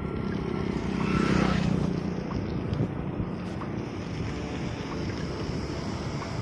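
Wind buffeting the microphone while riding a bicycle: a steady low rumble that swells louder for about a second near the start.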